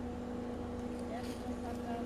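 Steady low hum of a vehicle engine idling, with a few faint short sounds over it.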